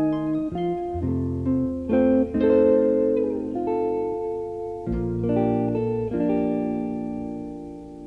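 Background music of plucked strings, a guitar picking a melody of notes over lower bass notes.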